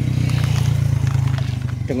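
Motorcycle engine running with a steady low drone and a fast even pulsing, the loudest sound throughout.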